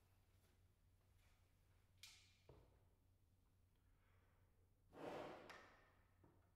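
Near silence in a hall, with two faint clicks about two seconds in, then a tubist's quick, audible intake of breath near the end.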